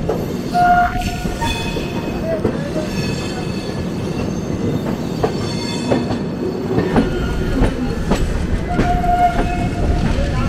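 Passenger coaches of an express train rolling over the tracks: a steady rumble with scattered clicks as the wheels cross rail joints and points, and thin high wheel squeal. A short tone sounds about half a second in and again near the end.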